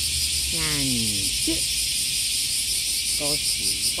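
Steady chorus of insects, a high-pitched pulsing hiss, with a few short sounds from a person's voice, one drawn out and falling in pitch about half a second in.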